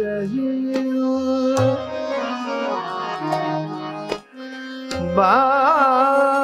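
Hindustani classical vocal music: tabla strokes over harmonium and tanpura drone, with a short lull just past four seconds. A male voice then re-enters about five seconds in, singing a wavering, ornamented melodic line.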